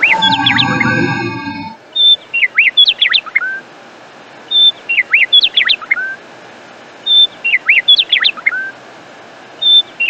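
Bird song repeating the identical phrase (a short high whistled note, then a quick run of sweeping chirps) about every two and a half seconds, like a looped recording. It follows a held musical chord that dies away about two seconds in.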